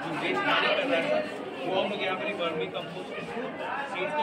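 People talking: speech with background chatter from other voices.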